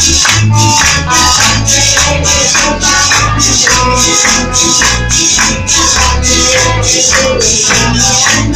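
Amplified praise music: a steady rattling beat of about two and a half strokes a second over low bass and guitar, with one long held sung note in the middle.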